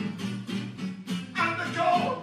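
Acoustic guitar strummed in a steady rhythm, with a man's voice singing over it from about a second and a half in.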